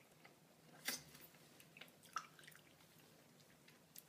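Faint wet mouth sounds of a ripe, juicy marula fruit being eaten: a few soft clicks and squishes, the clearest about a second in.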